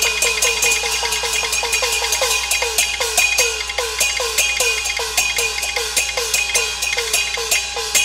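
Traditional Chinese opera percussion ensemble, gong and cymbal strokes, playing a fast, steady beat of about three to four strokes a second, each stroke ringing briefly, to accompany the stage action.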